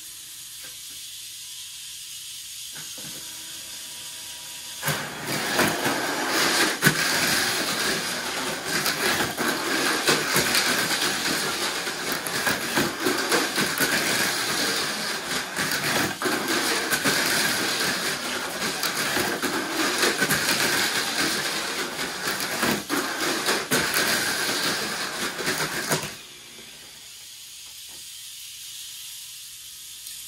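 Two Tamiya Mini 4WD Mach Frame cars racing on a plastic track: a loud, dense whine of small electric motors mixed with a constant clatter and clicking of rollers and wheels against the track walls. It starts suddenly about five seconds in and stops abruptly near the end, with a softer steady whir before and after it.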